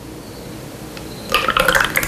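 Thick yogurt smoothie mixture poured from a plastic jug into plastic ice-pop molds, a quiet pour that turns into a short cluster of wet splashing and gurgling about a second and a half in as the tubes fill.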